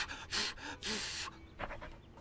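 A few short, breathy puffs of panting, spaced about half a second apart.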